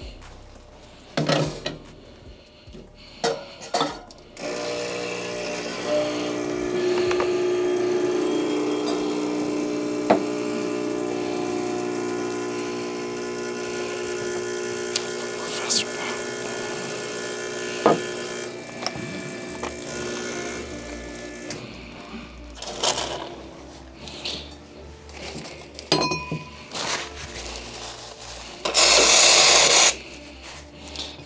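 Bezzera Magica E61 espresso machine's pump humming steadily while a shot is pulled, starting about four seconds in and cutting off about twenty-one seconds in, with a few knocks and clinks around it. Near the end, a brief loud hiss from the steam wand being purged.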